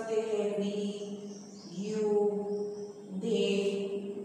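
A woman's voice speaking slowly in three long, drawn-out syllables, in a chant-like way, in time with the pronouns "we", "you" and "they" being written on a whiteboard.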